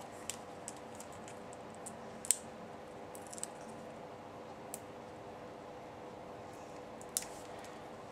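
Fingernails picking and peeling the paper backing off small foam adhesive squares (Stampin' Dimensionals): faint scattered clicks and crinkles, with one sharper click a little over two seconds in. A faint steady hum runs underneath.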